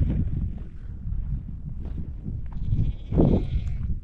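A sheep bleating once, a wavering call of about half a second near the end, over a steady low rumble of wind on the microphone.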